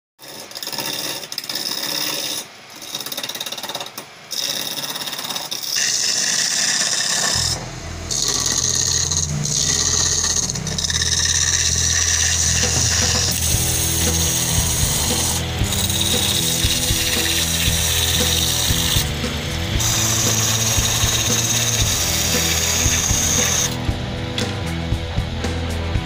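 Electric-motor-driven wood lathe spinning while a hand chisel cuts into the turning wood, a hissing scrape of shavings that breaks off briefly a few times.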